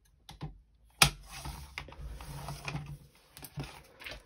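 Sliding paper trimmer cutting a clear plastic sheet. A sharp click about a second in as the cutter head goes down, then about two seconds of steady scraping as it runs along the rail, with small clicks of the sheet being handled before and after.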